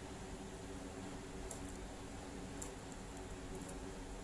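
Steady low hum and hiss of room noise, with a few faint light ticks, about three, from hands working a steel crochet hook through cotton thread.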